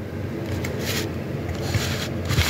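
Rubbing and scraping handling noise, with two brief swishes about a second apart over a low steady hum.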